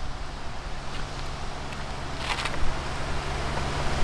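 Steady outdoor street background: a low rumble and hiss with a steady low hum, and one brief hiss about two seconds in.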